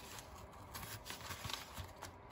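Faint rustling and crinkling of paper journal pages being handled and pressed flat by hand.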